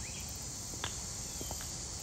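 Steady high-pitched chorus of insects, with a few faint taps.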